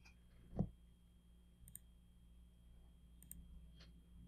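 Quiet computer mouse clicks, a few spaced over the stretch, two of them close pairs, with a short low thump about half a second in.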